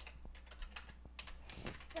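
Typing on a computer keyboard: several separate, fairly faint keystroke clicks as a word is typed.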